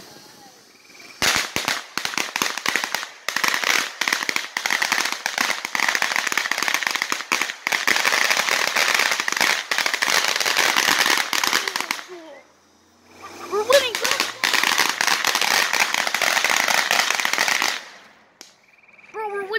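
Ground firework fountain throwing crackling sparks: a dense, rapid crackle of many small pops. It starts about a second in, breaks off for a moment about twelve seconds in, then crackles again until just before the end.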